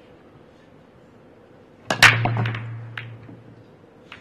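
Break shot in Chinese eight-ball: the cue strikes the cue ball and it smashes into the racked balls about two seconds in, followed by a quick cluster of ball-on-ball clicks and cushion knocks and a low rumble of balls rolling across the cloth that dies away over about a second and a half.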